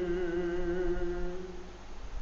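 A man's unaccompanied voice holding one long note of a noha lament, with a slight waver. The note fades out shortly before the end.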